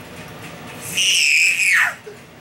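A single high-pitched, meow-like cry, held steady for about a second and then sliding steeply down in pitch.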